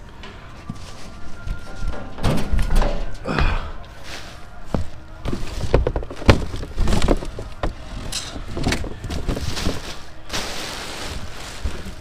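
Rummaging through trash bags and cardboard in a full metal dumpster: plastic and cardboard rustling with irregular knocks and thumps.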